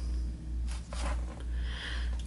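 Steady low hum, with faint soft rustling as tying thread is pulled to seat a half-hitch knot at the fly-tying vise.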